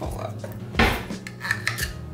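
A metal spoon knocking and scraping against a glass blender jar as ingredients are spooned in. There is one loud knock about a second in, then a few lighter clinks.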